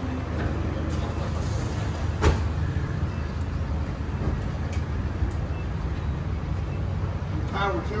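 A car engine idling with a steady low-pitched hum, with one sharp click about two seconds in; voices start near the end.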